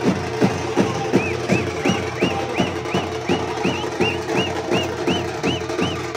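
Teenmaar drumming on dappu frame drums beaten with sticks, a fast even rhythm of about three strokes a second. About a second in, a high chirping tone joins, repeating in time with the beat.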